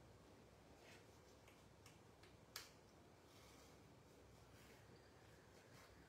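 Near silence with faint handling sounds of ribbon being threaded through a hole in cardstock: a few light clicks and rustles, with one sharper click about two and a half seconds in.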